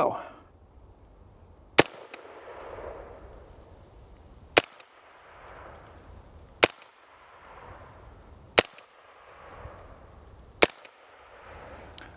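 Suppressed AR-15 firing five single rounds of 5.56 M855 ball through a Silencer Inc. Doomsday 5.56 suppressor, with a GemTech bolt carrier in its suppressed setting. The shots come about two seconds apart, each a sharp report followed by a rolling echo that fades over about a second. At the shooter's position it sounds pretty darn good.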